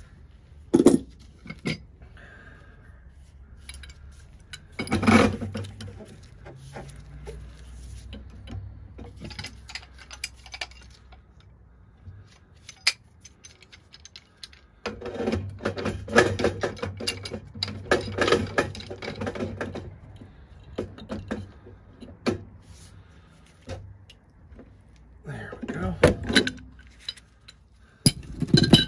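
Pipe wrench clanking and scraping on a threaded steel gas pipe as it is unscrewed from a furnace gas valve. A few sharp clanks come early, then a long run of rapid metal clinks and rattles in the middle, and more clanks near the end.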